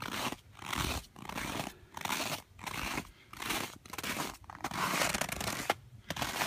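Footsteps crunching through deep, very cold snow at a steady walking pace, about one and a half steps a second.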